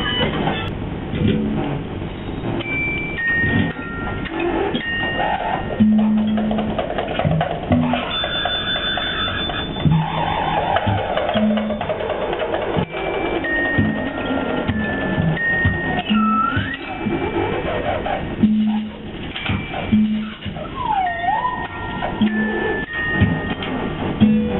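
Improvised electronic music: short held beeps at a low and a high pitch, swooping pitch glides, and clicking, knocking percussion.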